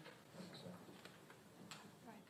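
Near silence: room tone with a few faint, short clicks and knocks.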